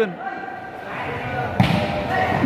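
A volleyball struck once in a kick-volleyball rally: a single sharp smack about one and a half seconds in, over faint background voices.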